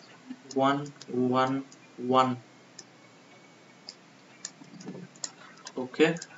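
Three short spoken words in the first half, then faint scattered clicks of a stylus tapping on a pen tablet during handwriting.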